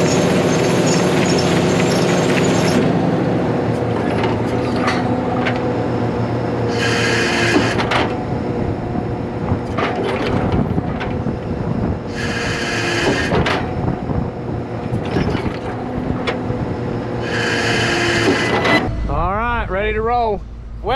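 Cotton module builder running with a steady engine and hydraulic drone as seed cotton is dumped in and packed by the tramper. A hissing burst comes three times, about every five seconds.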